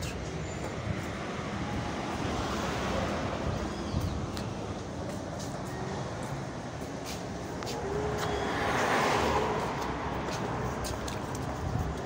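Road traffic on a town street: a steady rumble of cars, with one vehicle passing closer and louder about eight to ten seconds in.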